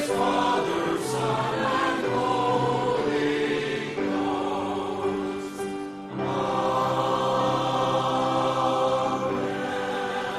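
A church choir sings in parts with long held chords. There is a short break about six seconds in, then another held chord.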